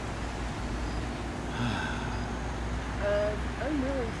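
Steady low rumble of a vehicle, with a brief hummed "mm" from a person about three seconds in and a few soft voice sounds near the end.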